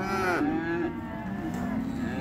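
Young beef cattle mooing: one long call that arches up and down in pitch at first, then holds lower for about a second.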